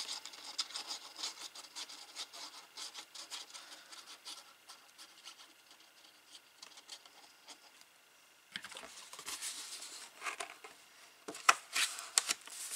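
Glue bottle nozzle scraping and tapping along the edge of a kraft cardstock flap as liquid glue is run along its gluing strip: a run of faint, irregular light clicks and scratches. In the last few seconds the card is handled and pressed down, with louder rustling and a few sharper clicks.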